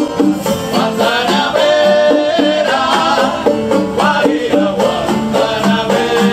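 A small live band playing Cuban music: strummed and plucked guitars over bongos, with a saxophone in the band.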